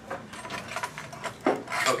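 Scratchy rubbing and rustling with small clicks, then a sharper scrape about one and a half seconds in.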